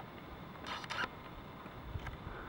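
Quiet background with a short, faint scraping noise just before a second in.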